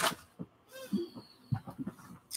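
A knock as something is set down, then light taps of a rubber stamp being dabbed on an ink pad, with a brief faint tone about a second in.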